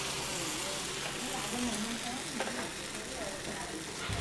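Batter sizzling in hot oil in a bánh khọt mold pan as it is ladled into the cups, a steady frying hiss.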